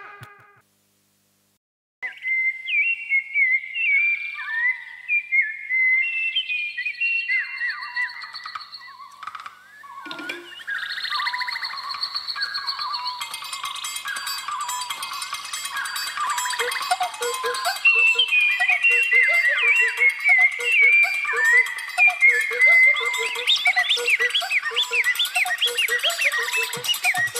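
After a short silence, bird chirps and whistles play over the sound system, many short rising and falling calls. From about eleven seconds in, an electronic music track with a steady beat builds up under the bird calls, which carry on over it.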